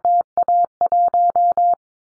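Morse code sent at 22 words per minute as a steady beeping tone, keyed in dots and dashes: the end of the J, then A and 1, repeating the callsign prefix JA1 (Japan). The keying stops a little after halfway through.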